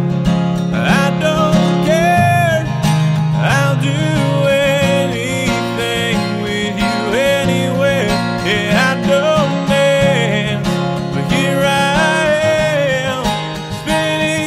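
Country-style acoustic cover song: a steel-string acoustic guitar strummed with a capo, under a man's sung lead vocal with drawn-out, sliding notes.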